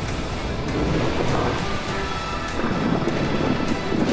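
Film soundtrack: a dramatic music score mixed with a steady rushing, rumbling sound effect like wind or a storm.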